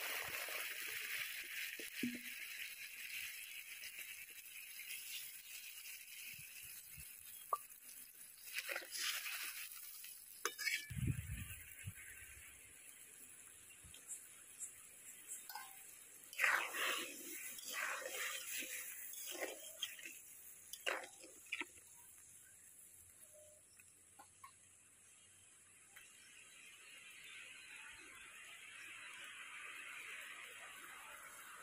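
Water hitting hot ghee in an aluminium wok with a loud sizzle that dies down over the first couple of seconds. The water then heats with a faint hiss that builds again near the end.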